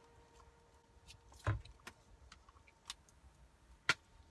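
Plastic CD jewel case being handled and pried open: scattered faint clicks and taps, a dull thump about one and a half seconds in, and a sharper click near the end.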